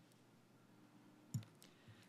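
Near silence in a council chamber, broken by one sharp click a little past halfway and a couple of fainter ticks after it.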